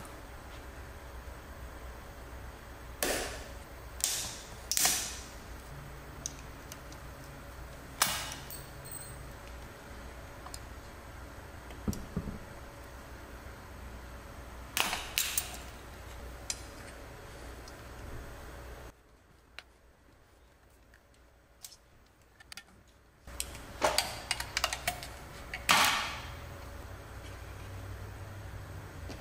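Snap ring pliers and a pick clicking against a snap ring and the aluminium transmission case while the snap ring is worked off a detent pin bore. About a dozen sharp metal clicks, some in quick clusters, sound over a low steady hum, with a few seconds of near silence in the middle.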